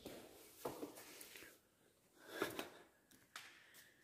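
Faint footsteps and handling rustle in a quiet room: a few soft steps and scuffs, the clearest about two and a half seconds in, with a light click shortly after.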